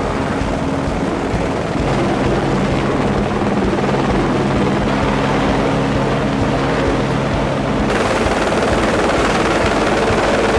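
Helicopter overhead, its rotor and engine making a loud, steady wash of noise as it carries a slung load on a long line. The sound changes character about eight seconds in.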